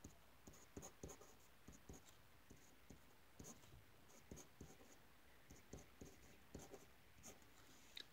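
A uni-ball pen writing on paper: faint, irregular short scratches and taps of the pen strokes, one after another.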